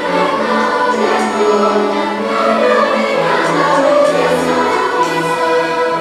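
A large children's treble choir singing a cantata in sustained notes, accompanied by a youth orchestra whose bass line moves in steps beneath.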